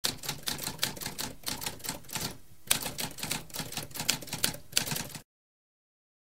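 Typewriter keys typing in a quick run of sharp keystrokes, with a short pause a little over two seconds in. Typing resumes with a firm strike and stops about five seconds in.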